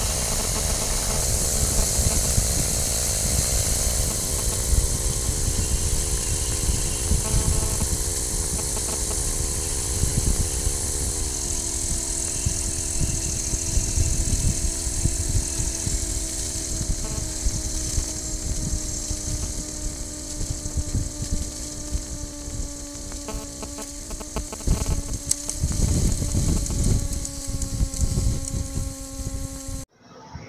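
Engine and propeller of a P&M Quik flexwing microlight trike running steadily in flight, under heavy wind noise on the microphone. The engine note steps down twice, about four and eleven seconds in, as the throttle is eased back for the descent inbound to the airfield, then sinks slowly lower.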